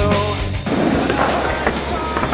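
Punk rock music with singing that cuts off about half a second in, giving way to skateboard wheels rolling on a wooden halfpipe with a couple of short knocks near the end.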